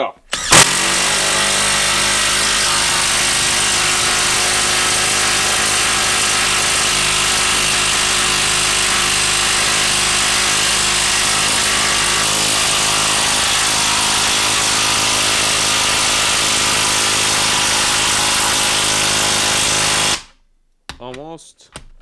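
Makita 1/2-inch brushless cordless impact wrench hammering as it drives a long screw into the end grain of a wooden log. It runs without a break for about twenty seconds, then stops near the end.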